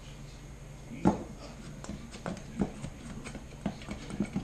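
Hands kneading sticky honey-and-powdered-sugar queen candy in a stainless steel mixing bowl, giving a series of irregular knocks and clicks, the loudest about a second in.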